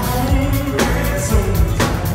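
Live pop band performance: a male lead vocalist singing over drums, electric bass and electric guitar, with drum hits marking a steady beat.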